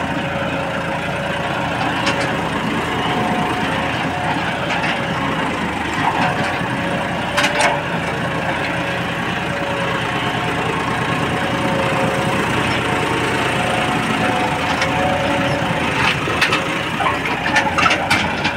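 Tractor engine running steadily under load as it pulls a mouldboard plough through dry, cloddy soil. A few sharp knocks stand out, one about a third of the way in and several near the end.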